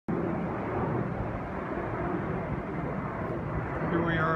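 Steady outdoor background rumble with a faint low hum and no distinct events.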